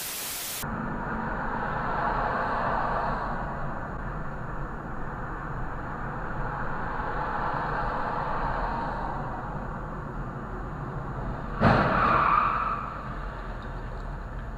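A short burst of static hiss, then steady road and engine noise of a car driving on a highway, heard from inside the cabin. Near the end comes a sudden loud sound lasting about a second.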